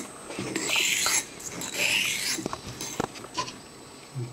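Old Wade & Butcher 7/8 straight razor being honed on a wet Norton combination waterstone: two rasping strokes of the blade along the stone, followed by a few light clicks.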